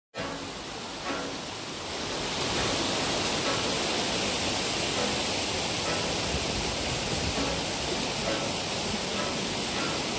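Steady rush of a forest stream, an even hiss of running water that grows louder about two seconds in.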